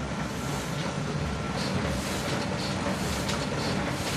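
Industrial paper-printing machine running: steady machine noise with a low hum and faint high clicks recurring about twice a second.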